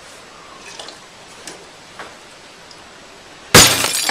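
Faint room noise with a few small clicks, then near the end a sudden, very loud crash with a crackling tail that dies away. Nothing breaks in the picture, so the crash is an edited-in sound effect.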